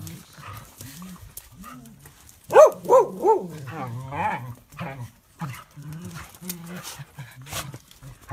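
Small dogs barking as they play: a quick run of three loud barks about two and a half seconds in, with softer, lower vocal noises from the dogs around it.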